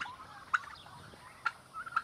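Turkeys calling: several short, sharp, high calls, one every half second or so.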